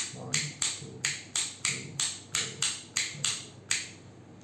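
Modular wall switch flicked rapidly on and off, a dozen or so sharp clicks at about three a second that stop just before the end. The repeated toggling is what puts the smart switch module into Wi-Fi setting mode.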